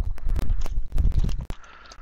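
A cardboard trading-card hobby box being handled and opened: a run of clicks, scrapes and low thumps, quieter in the last half second.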